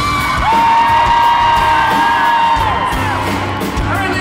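Live pop-rock band music at a concert, loud and steady. A voice sweeps up into one long, high, held 'woo' about half a second in and slides back down roughly two seconds later.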